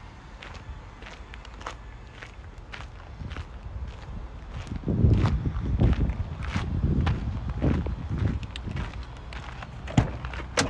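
Footsteps crunching across a gravel yard, a steady series of short scuffs. From about halfway there are louder low rumbles of wind buffeting the microphone.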